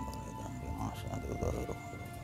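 Soft background music of long held notes, with a faint murmuring voice underneath about a second in.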